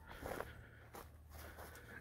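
Faint footsteps on grass as a person walks, a few soft irregular steps over a low steady rumble.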